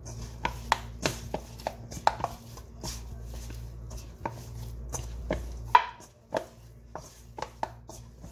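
Hands kneading dough in a stainless steel bowl: irregular slaps and knocks of dough and hands against the metal, about two or three a second, the loudest a little before six seconds in, over a steady low hum.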